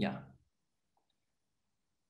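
A man's voice says a short 'yeah', then near silence, as in a gated video-call feed.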